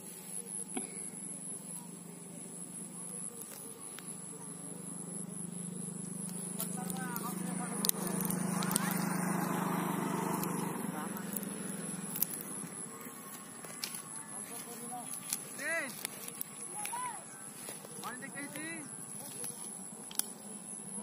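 A steady low hum swells to its loudest around the middle and then fades out, with scattered light clicks throughout. A person's voice is heard at moments in the second half.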